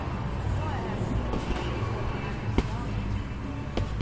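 Strikes landing on a hanging Everlast heavy bag: a few sharp smacks, the loudest about two and a half seconds in and another near the end, over music in the background.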